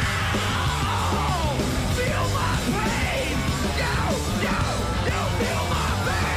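Loud punk rock song with yelled vocals over a steady drum beat and electric guitar.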